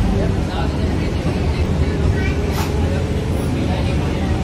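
Engine and road noise inside a moving bus: a loud, steady low rumble.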